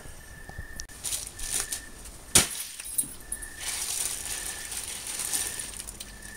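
Handling noise of a camera being moved and set in place, with one sharp knock a little after two seconds in and a stretch of rustling in the second half. A faint high tone comes and goes in the background.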